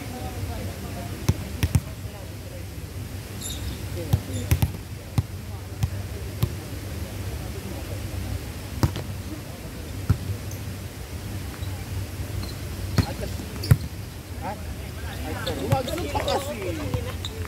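A volleyball being hit back and forth: about a dozen sharp, irregular slaps of hands and forearms on the ball, in ones and quick pairs a second or more apart, with players' voices in the background.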